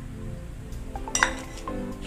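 Background music with steady notes, and a couple of light metallic clinks about a second in as a stainless-steel bowl is set down among other steel bowls.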